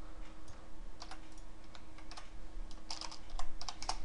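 Typing on a computer keyboard: a few scattered key clicks, then a quicker run of keystrokes in the last second.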